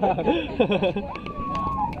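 People laughing, then a single high, steady tone, likely a squeal, held for most of a second near the end.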